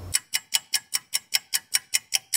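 Clock ticking sound effect, a steady run of sharp ticks at about five a second, counting off a few seconds of waiting time.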